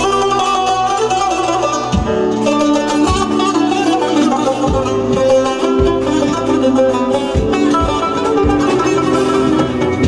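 Azerbaijani tar, a long-necked lute with a skin-covered double-bowl body, played with a plectrum: a solo melody of quick picked notes.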